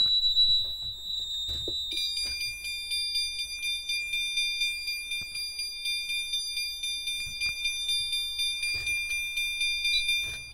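System Sensor CHSWL chime strobe sounding its 'Four Second High' tone at high volume. A single steady high beep lasts about two seconds, then the sound changes to several high tones together, pulsing rapidly and evenly.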